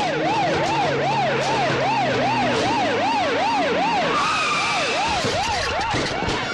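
Police vehicle siren yelping rapidly up and down, about three cycles a second, over a steady low rumble; a second, higher siren tone slides in about two-thirds of the way through.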